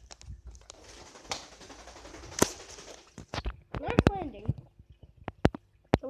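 Rustling and knocking from a handheld phone being carried while walking: a rush of noise over the first few seconds with a sharp knock, then a brief voice about four seconds in and a few more clicks near the end.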